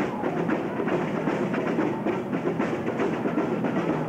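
Marching band drum line playing a street cadence: a steady, rapid, even rhythm of drum strokes.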